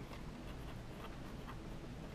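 A pen writing by hand on paper: faint, short strokes.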